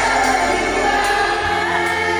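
Live concert music through a stage sound system, with many voices singing together like a crowd singing along. The deep bass drops out near the end.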